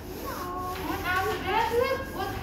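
Young children's voices speaking and calling out, high-pitched.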